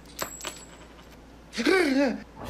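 A few small metal coins clinking as they drop. About a second and a half in comes a man's loud, swooping yell of fright.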